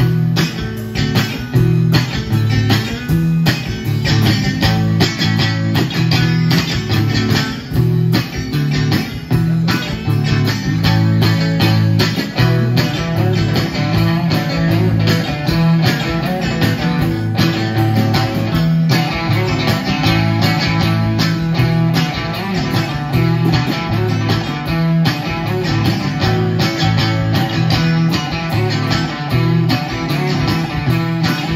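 A live band playing: electric guitar through an amplifier, with drums and cymbals keeping a steady beat.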